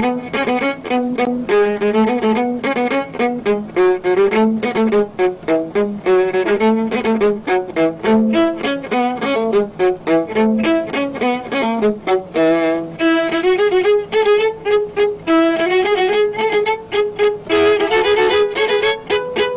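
Several overdubbed violas playing a lively Latvian folk-song arrangement in quick, short, detached notes. The lowest part drops out about twelve seconds in, leaving the upper parts playing on.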